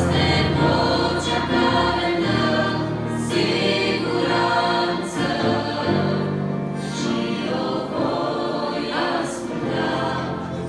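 Women's choir singing a Romanian Christian hymn with a small church orchestra accompanying. Long held low notes run under the voices.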